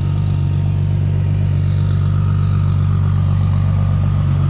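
Turbocharged, heavily modified Toyota Supra's engine running at low speed as the car rolls up close: a steady, low drone.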